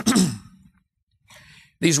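A man lets out a voiced sigh, an "ahh" falling in pitch over about half a second, right after a sip of water, then a soft breath about a second later before speech resumes.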